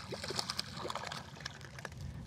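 A hooked bass splashing at the water's surface beside the boat as it is reeled in: a run of irregular small splashes.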